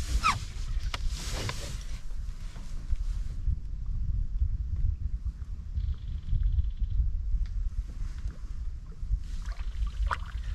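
Water lapping and splashing against the side of an aluminium canoe as a trout is lowered back into the lake, over a steady low wind rumble on the microphone.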